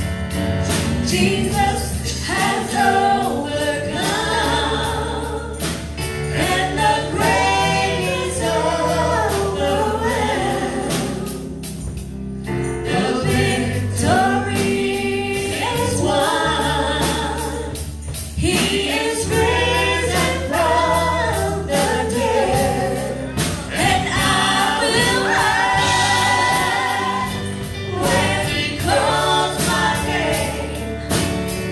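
Live gospel worship song: several men and women singing together into microphones over a band with electric guitars and a steady drum beat.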